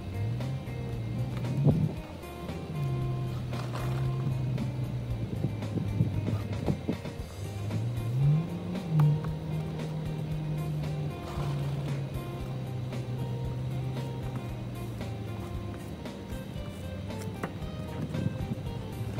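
Car engine revving up and holding at raised revs, then easing off, as the stuck car tries to pull out of deep snow. Background music plays over it.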